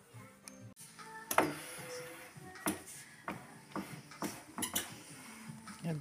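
Background music with a series of sharp knocks and clicks, about ten spread irregularly over several seconds, the loudest early on.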